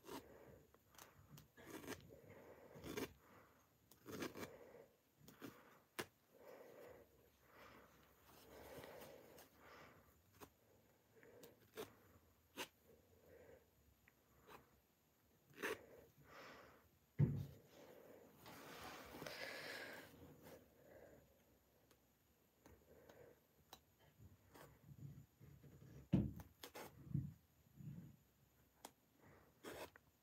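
Faint, scattered small clicks of a seam ripper cutting the stitches of a jacket's sleeve-lining seam, with the silky lining fabric rustling as it is handled; a longer rustle comes a little past halfway, and a few soft thumps are heard.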